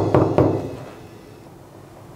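Knuckles knocking on an apartment door: a quick run of sharp raps, about four a second, ending about half a second in.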